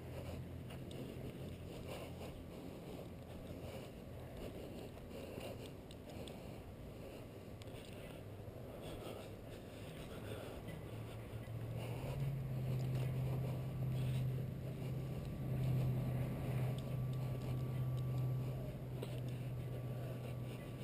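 A low, steady engine-like hum, faint at first and growing louder about halfway through, over quiet outdoor ambience.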